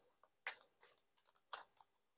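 A deck of tarot cards being shuffled by hand: a few faint, short card flicks and snaps, about half a second in and again around one and a half seconds.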